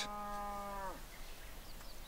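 A cow mooing once: a steady call of about a second that drops in pitch as it ends.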